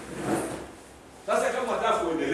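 A brief scraping rustle, then a man's voice preaching loudly from about a second in, echoing a little in a hall with a hard floor.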